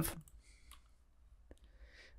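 Two faint clicks of a computer mouse, a little under a second apart, in a quiet room.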